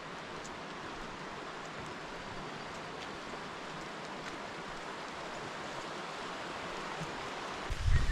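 Steady rushing outdoor noise while walking along a mountain path, with a few faint footstep ticks. A low thump comes near the end.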